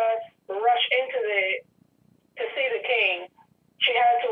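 A person speaking over a telephone line, the voice thin and narrow, in three short phrases with brief pauses between them.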